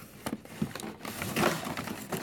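Thin clear plastic bag crinkling as it is handled and lifted out of a cardboard box, with a few light knocks. The crinkling is densest a little past the middle.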